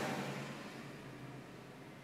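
A pause between spoken phrases: faint, steady background noise with a low hum, and the last word fading out at the start.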